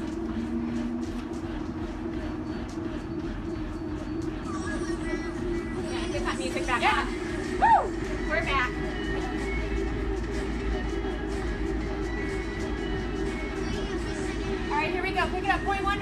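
Background music over the steady hum of treadmills and the quick, regular footfalls of running on their belts. A brief voice-like sound comes about seven seconds in.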